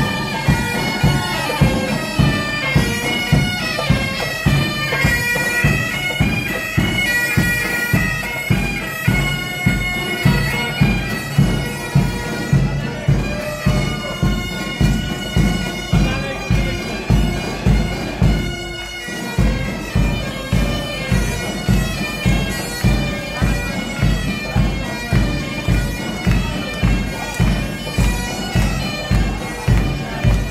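Pipe band playing: bagpipes holding a melody over their drone, with a steady drum beat under them. The drumming pauses briefly about two-thirds of the way through, then picks up again.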